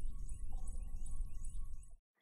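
Channel-logo intro sting: a deep, low sound bed with a faint high tone and a faint, even ticking above it. It cuts off suddenly at the end.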